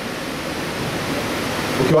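A steady, even hiss with no distinct events, and a man's voice starting again right at the end.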